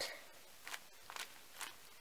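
Three faint, short rustles from a packaged foil emergency blanket being handled in its plastic wrapper.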